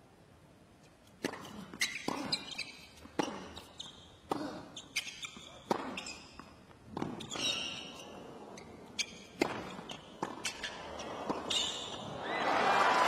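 Tennis ball struck by rackets and bouncing on a hard court during a rally: about a dozen sharp hits at uneven spacing, starting with the serve about a second in.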